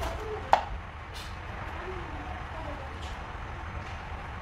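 Kitchen knife cutting a tomato on a wooden cutting board: one sharp knock of the blade on the board about half a second in, then a couple of fainter cuts, over a steady low hum.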